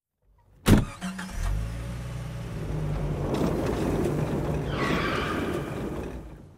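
Car sound effect: a single knock, then a car engine comes in and runs steadily, swelling a little before fading out near the end.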